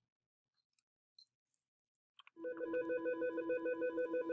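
Office landline desk phone ringing with a fast-pulsing electronic warble that starts a little past halfway through, after near silence and a faint click. The ring is the incoming Duo two-factor authentication call.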